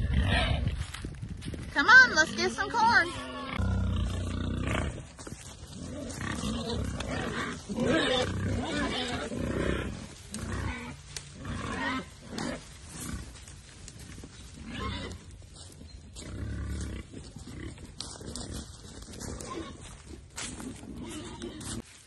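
Pigs grunting and squealing at feeding time, irregular calls, the loudest with a bending pitch a couple of seconds in.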